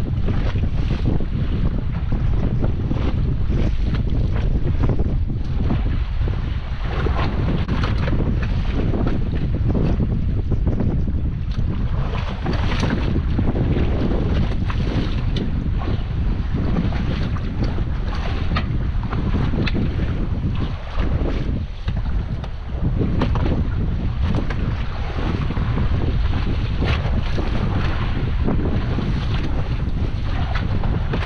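Steady low wind rumble buffeting the microphone on open sea, with waves washing around a small boat.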